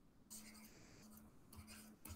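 Near silence, with a few faint, brief scratches of handwriting being drawn on a pen tablet, over a faint steady low hum.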